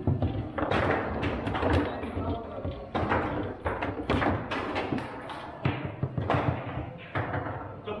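Table-football play: the ball is struck by the rod figures and rebounds off the table walls, with rods knocking against the bumpers, heard as an irregular run of sharp clacks and thuds.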